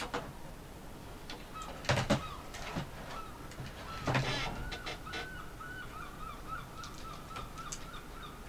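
Plastic clicks and knocks of a ThinkPad X230's chassis parts being handled and pressed into place, loudest in two clusters about two and four seconds in. A faint wavering tone runs through the second half.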